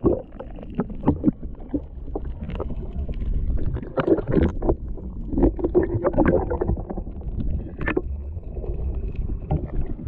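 Muffled underwater sound picked up by a camera held below the surface: a low rumble of moving water with irregular gurgles and knocks.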